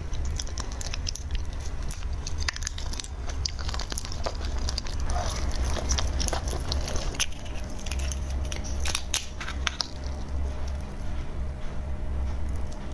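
Close-up crackling and clicking of a large red shrimp's shell being pulled apart and peeled by hand, in many small irregular snaps, over a steady low hum.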